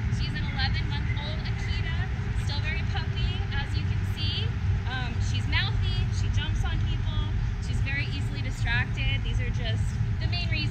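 Birds chirping and singing in short, rapidly repeated phrases throughout, over a steady low rumble.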